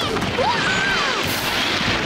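Cartoon crash sound effects: a heavy body slamming down and tumbling, with a continuous rumbling, scraping rush of noise and a brief gliding cry over it in the first second.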